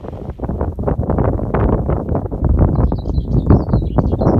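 Wind buffeting the camera microphone in loud, uneven gusts. A small bird sings a high, warbling phrase in the last second or so.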